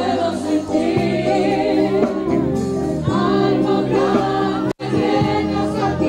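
Gospel music with group singing over held low accompanying notes. The sound cuts out completely for an instant about three-quarters of the way through.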